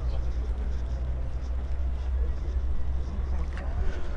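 Steady low rumble of a car engine running, with a faint even hum throughout and faint voices of people in the background.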